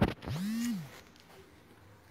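A sharp click, then one short cry from a voice, under a second long, that rises in pitch, holds and falls away.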